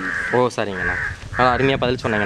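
Crows cawing several times, short harsh calls in quick succession, over a man talking.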